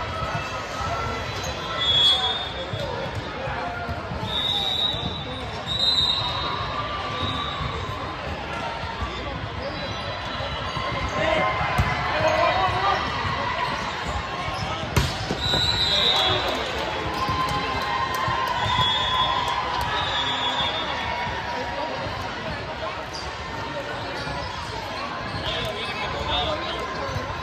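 Volleyball in a large gym hall: balls bouncing and being struck with sharp smacks, and sneakers squeaking briefly on the hardwood court several times, over people talking.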